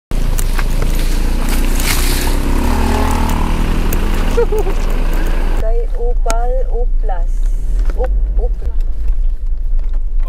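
Car running up a rough dirt road, heard from inside the cabin: a steady low rumble of engine and tyres, with heavier road noise over the first half that eases about halfway through. People laugh and talk over it in the second half.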